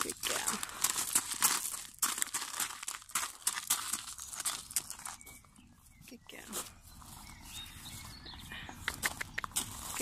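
A horse's hooves and a person's footsteps crunching on gravel as they walk. The steps go softer for a few seconds in the middle, where they cross onto grass, and crunch again near the end.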